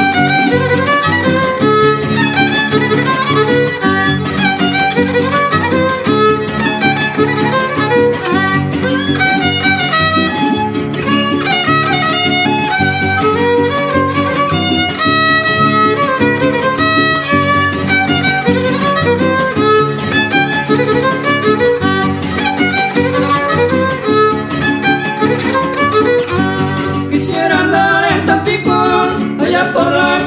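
Trío huasteco playing an instrumental break of a huapango (son huasteco): the violin leads with quick melodic runs over the steady strumming of the jarana huasteca and huapanguera.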